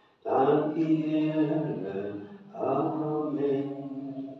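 A man's voice chanting a slow, sung line: two long held phrases of about two seconds each, with a short break between.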